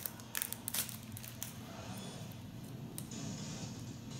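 Foil wrapper of a Topps Chrome baseball card pack crinkling and crackling as it is torn open by hand, with a quick run of crackles in the first second or so, then quieter handling.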